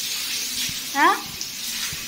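Water running from an open garden hose and splashing onto a wet concrete floor as the floor is washed down, a steady rushing spatter. About a second in, a voice gives one short rising call.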